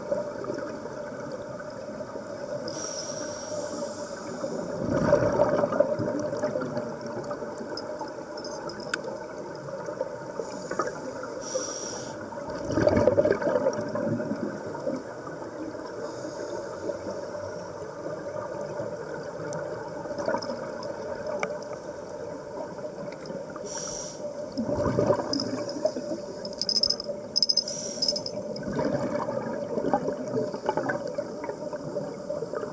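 Scuba regulator breathing heard underwater: a short high hiss of each inhalation followed by a louder rush of exhaust bubbles, four breaths several seconds apart, over a steady low hum.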